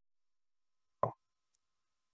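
Near silence broken by a single short pop about a second in.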